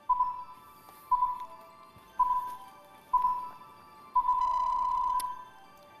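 Quiz-show countdown timer beeping once a second: four short electronic beeps, then one longer beep of about a second as the time runs out, over a faint music bed.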